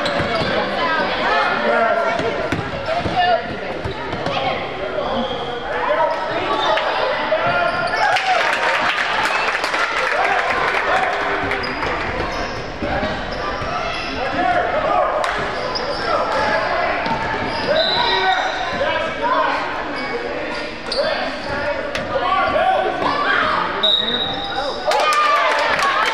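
A basketball bouncing on a hardwood gym floor during play, with shouting and chatter from players and spectators echoing in the hall. There are brief high squeaks about two-thirds of the way through and again near the end.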